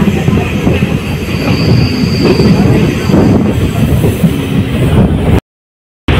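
Passenger train running, with the steady loud rumble and rattle of the carriage on the track heard from on board, and a faint high whine about a second and a half in. The sound cuts out abruptly for a moment near the end.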